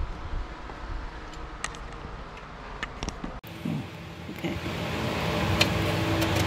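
A few faint clicks of metal parts being handled over a steady background hum. About three and a half seconds in, the background changes abruptly to a steadier hiss.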